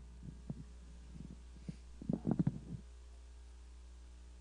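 A hushed pause: a steady low electrical hum from the microphones and sound system, with a few soft knocks and rustles about two seconds in.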